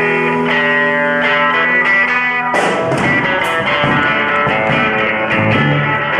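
Live power pop band playing an instrumental passage with no singing: electric guitars hold a ringing chord for about two and a half seconds, then drums, bass and guitars come in together in a driving rhythm.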